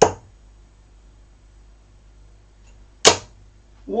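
Two 24 g Bulls Max Hopp steel-tip darts striking a bristle dartboard, one sharp thud right at the start and a second about three seconds later.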